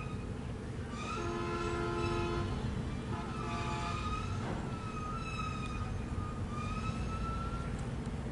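Two short steady blasts of a multi-tone horn, the first longer, over a steady low engine rumble, with rising wailing tones recurring about every two seconds.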